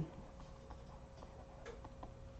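Faint, irregular ticks of a stylus tapping and sliding on a tablet screen as a word is handwritten, about five small clicks over a low steady hum.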